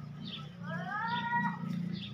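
A single high-pitched animal call, rising and then holding for about a second before stopping, over a steady low hum.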